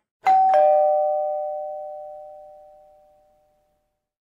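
Two-note chime, 'ding-dong': two bell-like notes struck about a quarter second apart, the second lower, ringing out and fading away over about three seconds.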